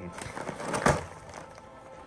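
Cardboard box of Shapes crackers being pulled open by hand: scraping and crackling of the card with one sharp snap about a second in, then quieter handling.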